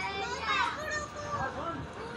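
Children's voices, with a high-pitched child's voice calling out over a background of other children playing.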